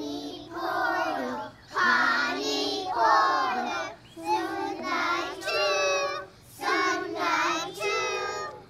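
A group of preschool children singing a song together in short phrases, with brief breaths between them.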